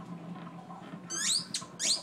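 A squeaky toy being squeezed: two short, high squeaks, each rising in pitch, in the second half.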